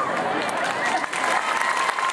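A crowd of students applauding, many hands clapping at once, with voices mixed in.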